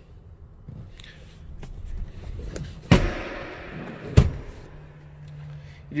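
Two sharp thumps inside an SUV's cabin, about a second apart. The first has a short trailing rattle, and a faint steady low hum runs under the second half.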